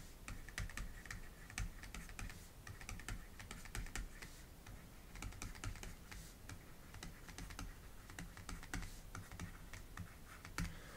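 Faint, irregular ticks and taps of a stylus writing on a graphics tablet, over a low steady hum.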